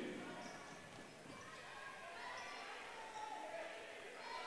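Faint basketball game sound in a gymnasium: a ball dribbling on the hardwood floor, with distant voices from players and crowd.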